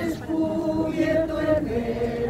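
A group of people singing a slow hymn together, holding long notes that step to a new pitch a couple of times.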